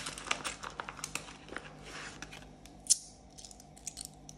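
Clear plastic zip pouch of a cash-envelope binder crinkling as hands rummage in it, with small clinks of coins being taken out and a sharp click about three seconds in.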